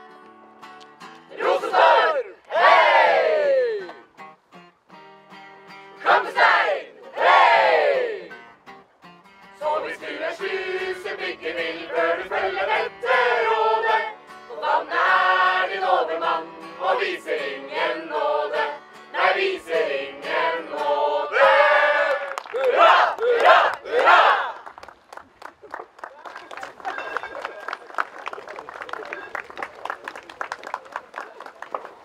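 A group of voices gives two long shouts that fall in pitch, then sings a song together to an acoustic guitar. Near the end the singing stops and the guitar keeps strumming on its own.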